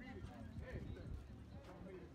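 Indistinct voices of several people talking, with a few soft knocks.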